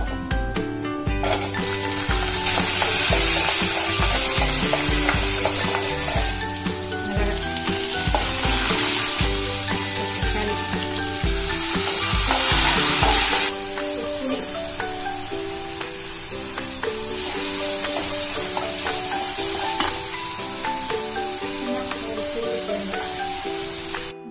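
Food frying in oil in a pan, a steady sizzle that is loudest for the first half and drops to a quieter sizzle about halfway through. Background music with a steady beat plays throughout, and the beat drops out at about the same point.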